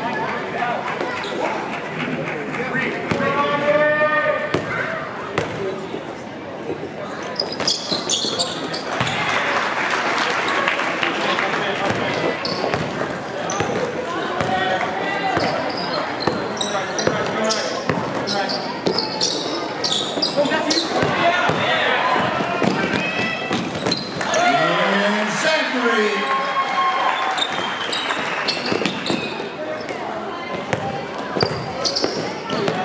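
Basketball game sounds in a gymnasium: a ball bouncing on the court floor again and again amid players' and spectators' voices calling out.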